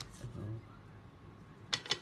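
Playing cards being leafed through by hand, one card sliding off the stack onto the next: a sharp click at the start and a quick cluster of snapping clicks near the end.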